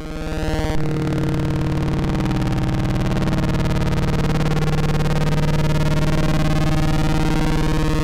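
Eurorack modular synthesizer patch, a Rossum Trident oscillator wave-spliced through a Klavis Mixwitch, sounding one steady low-pitched drone rich in overtones, its main pulse under modulation. The tone fills out about a second in and then holds at an even level.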